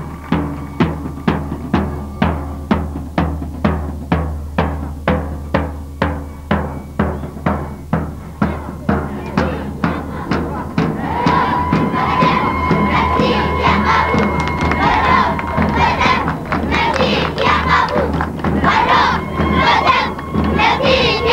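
A drum beats a steady march rhythm, about two strokes a second. About halfway through, a crowd of children's voices takes over, shouting together in chorus over a long held note.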